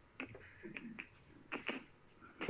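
Quiet room tone with a few faint, short clicks spread across two seconds.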